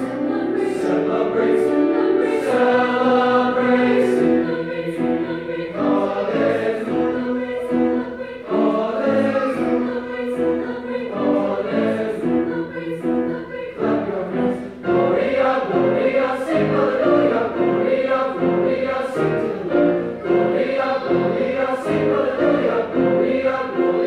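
Mixed choir of teenage voices singing in parts, with piano accompaniment.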